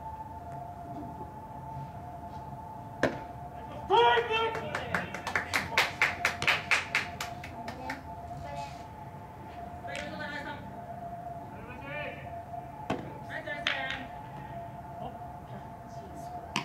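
Players calling out and shouting across a baseball field, with a run of rapid claps about four to seven seconds in and sharp smacks about three seconds in and near thirteen seconds. A steady high hum sounds underneath.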